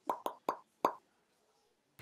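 Four short, pitched pop sound effects in quick succession within the first second, from an animated logo whose dots pop into place one by one.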